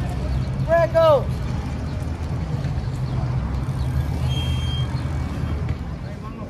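City bus engine running with a steady low rumble as the bus pulls up to the stop. A loud shouted call from a person rings out about a second in.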